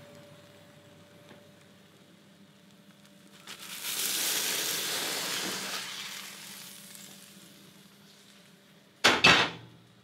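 Omelette sizzling in a hot frying pan: the hiss swells about three and a half seconds in and fades away over a few seconds, over a faint steady hum. A brief loud burst near the end.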